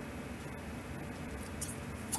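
Steady low room hiss, with one faint, brief rustle of tarot cards being handled near the end.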